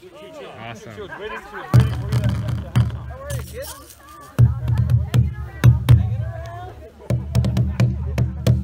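Hide-covered hand drums struck in an uneven string of beats, some ringing deep and booming, with voices chattering behind.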